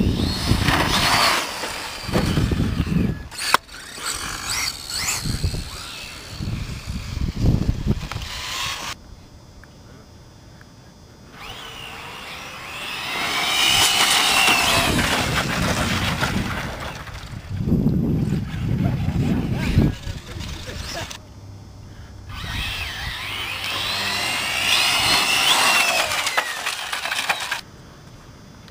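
Radio-controlled cars racing on asphalt, their motors whining up and down in pitch as they speed up and slow down. The sound falls away twice, about a third of the way in and again about three-quarters through.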